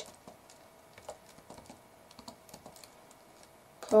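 Faint, irregular keystrokes on a computer keyboard as text is typed.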